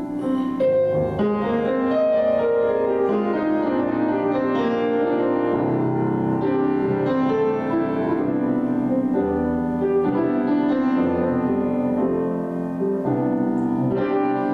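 Grand piano played solo: an unbroken run of held, overlapping notes and chords.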